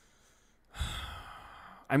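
Near silence, then a man's sigh into a close microphone, lasting about a second, starting a little under a second in.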